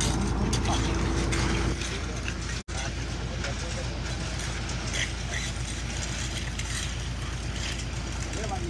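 Concrete mixer truck's diesel engine running steadily as it delivers concrete down its chute into a footing form, a low rumble throughout.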